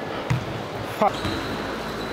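A basketball bounces on a hardwood gym floor during a game, with a dull thump about a third of a second in, over the steady background noise of the gym.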